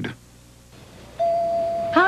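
A short near-quiet gap between commercials, then a little over a second in a single steady tone starts and holds at one pitch into the opening of the next commercial.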